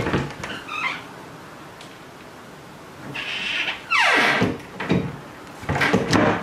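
Wooden wardrobe door being swung on its hinges, with a knock at the start, a creak that glides steeply down in pitch about four seconds in, and knocks near the end as the door is moved and shut.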